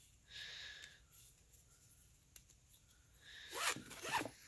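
Nylon ratchet-strap webbing sliding through its loop and ratchet buckle. A faint, brief rub comes near the start and a louder one just before the end.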